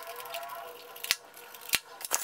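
Plastic packing straps being cut with scissors: two sharp snips, a little over a second in and again near the end.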